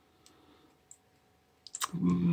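Near silence for most of the stretch, then a few short clicks near the end, just before a man starts to speak.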